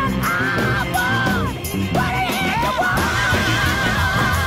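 Soul-jazz/funk recording playing: a high wailing melodic line with vibrato and pitch slides over a steady bass and drum groove.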